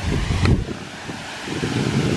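Wind buffeting the microphone in low gusts while a folded paper map is opened out, with one sharp crack about half a second in.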